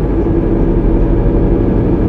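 Dark ambient / powernoise electronic music: a loud, steady, dense low drone with a few held tones and no clear beat.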